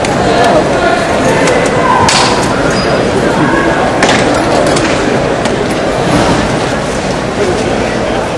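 Indistinct chatter of people in a large arena hall, with two sharp knocks, the first about two seconds in and the second about four seconds in.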